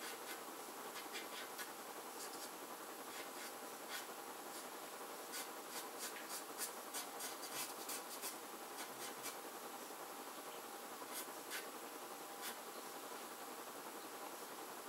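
Soft pastel stick stroking and scratching on paper, in short strokes with a quick run of them in the middle.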